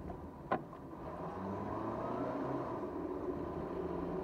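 Engine and road noise of a car heard from inside its cabin while driving slowly, the engine pitch rising as it speeds up from about a second in, then holding steady. A single sharp click sounds about half a second in.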